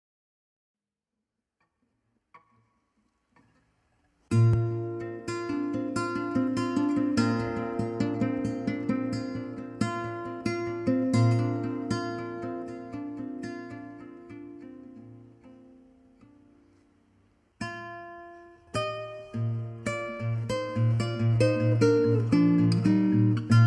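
Alhambra 5P CW nylon-string classical guitar, picked up through its built-in Fishman pickup, played fingerstyle: a slow melody over plucked bass notes begins about four seconds in, dies away almost to silence, then starts up again near the end.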